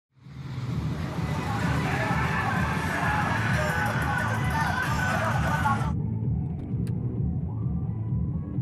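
Muffled, bass-heavy music with a steady low rumble and indistinct voices over it. About six seconds in, everything above the low rumble cuts off suddenly.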